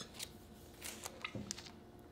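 Faint crinkling of clear plastic comic book bags and paper being handled, a few short crackles scattered through.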